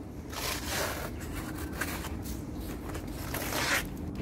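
A long knife scraping and slicing at the fibrous sheaths of a cut banana stem: several short scraping strokes, the strongest just before the end.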